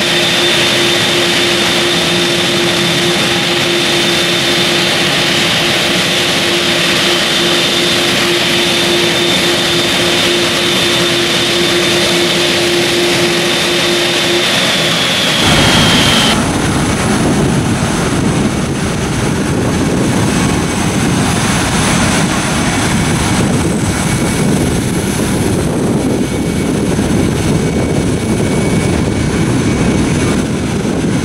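Boeing 747-8F's four GEnx jet engines running at low power: a steady noise with a hum and a high whine. About halfway through, the sound changes abruptly to a deeper, noisier one with a different, higher whine.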